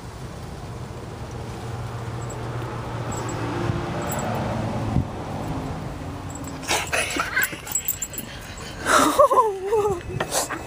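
A domestic cat growling low and steady for several seconds over prey, then a few knocks and rustles, and near the end a whining call that falls in pitch.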